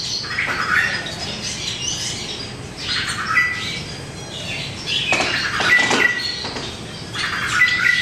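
Small aviary birds chirping and calling in several bursts a couple of seconds apart, each a quick cluster of high chirps with a few short clear whistled notes.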